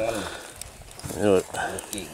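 A person's voice speaking briefly about a second in, over a faint background with a few light clicks.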